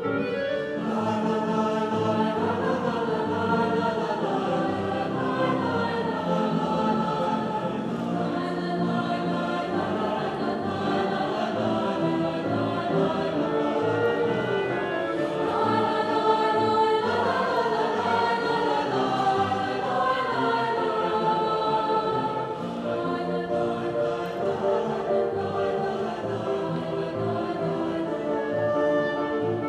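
A mixed-voice high school choir singing in harmony, accompanied by a grand piano.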